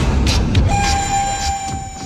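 Dramatic film background score: a loud, dense swell with a deep rumble, joined about two-thirds of a second in by a single held high note.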